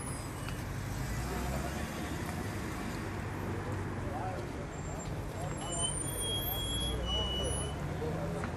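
Steady road traffic noise with a low engine hum, and indistinct voices of people nearby.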